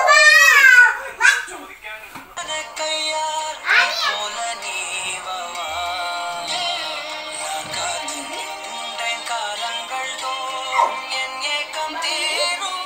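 A young child's high-pitched cries during a tussle over a toy for the first second or so, then a song with singing plays steadily for the rest.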